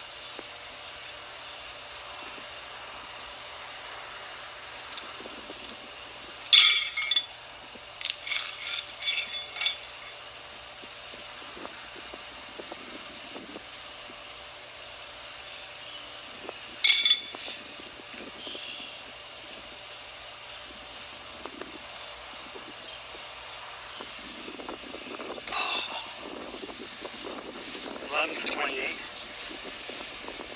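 Pitched steel horseshoes striking the metal stake with a bright ringing clank: one at about six seconds followed by several smaller clanks as the shoe rattles and settles, and a single clank near seventeen seconds. Softer clinks of the shoes come near the end.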